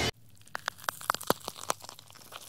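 Editing transition sound effect: a quick, irregular run of about nine sharp crackling clicks over about a second and a half, fading near the end.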